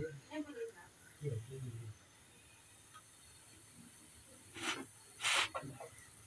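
A faint low murmur, then near quiet, then two short hisses about half a second apart near the end.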